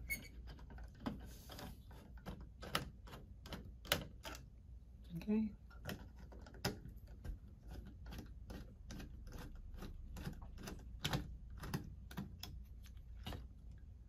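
Irregular sharp metal clicks and taps, a few a second, from a screwdriver working the mounting screws of an old Honeywell T87 round thermostat.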